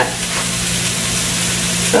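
Lamb shanks sizzling as they sear in a heavy pot on an electric stove: a steady hiss with a low hum under it.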